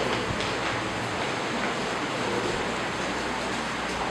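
A steady, even hiss of background noise with no speech.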